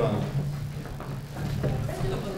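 A steady low electrical hum from the hall's sound system, with faint voices in the background.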